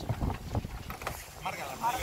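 Wind buffeting the microphone aboard a sailing yacht under way, a steady low rumble, with a couple of dull knocks in the first second and a voice starting near the end.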